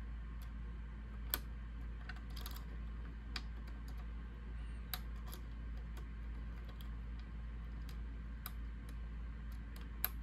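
Lock pick ticking against the pins inside a pin-tumbler challenge lock's keyway as the pin stacks are probed one by one and counted. About a dozen faint, irregular clicks, over a low steady hum.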